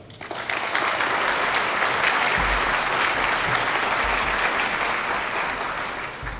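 Audience applauding in a large hall, starting at once, holding steady and tapering off near the end.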